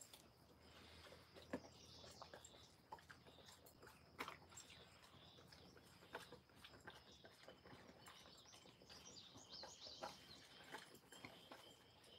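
Near silence, with faint scattered clicks of an Alaskan Malamute puppy biting and chewing grass. A faint steady high chirping starts in the background about two-thirds of the way in.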